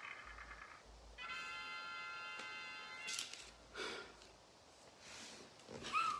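Electronic chime or jingle from a number-drawing app on a tablet, a steady chord of several tones held for about two seconds while the lottery-ball drum runs, then cutting off. A couple of short soft noises follow.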